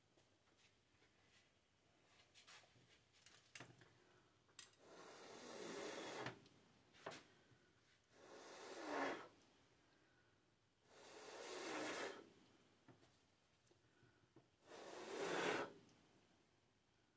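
A person blowing hard by mouth across wet acrylic paint on a canvas to push it outward in a Dutch pour: four long blows about three seconds apart, each building up and then stopping short, with a few small clicks between.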